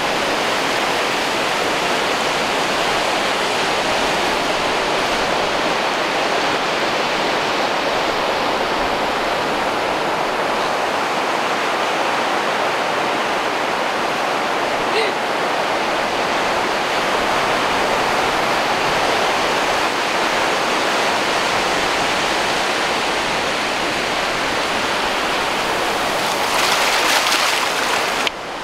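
Steady rushing of surf and shallow wash running over sand, an even, unbroken noise throughout.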